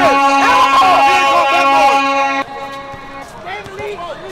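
A loud, steady single-pitched tone is held for about two and a half seconds, then drops away sharply, with men shouting over it.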